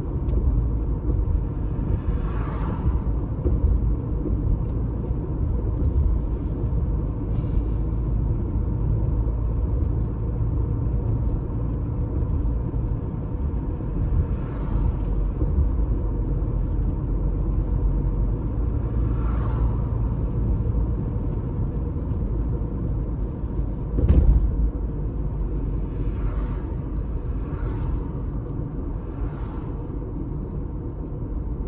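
Road noise inside a moving car: a steady low rumble of tyres and engine, with a few oncoming cars swishing past now and then. A single sharp knock about 24 seconds in, as the car goes over a bump.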